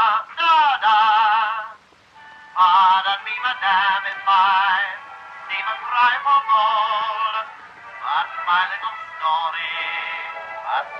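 A vocal number from an early sound-film soundtrack: a singer holds notes with wide vibrato over orchestral accompaniment. Near the start there is a brief pause, and the singing picks up again about half a second later.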